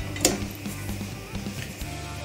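Background music, with one short tap about a quarter second in as a block of butter is dropped into a wok of oil.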